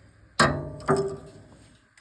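Two sharp metallic clinks about half a second apart, each ringing briefly and fading: a steel wrench knocking against the rocker-arm nuts and valve gear of a Honda GX620 engine during a valve-clearance adjustment.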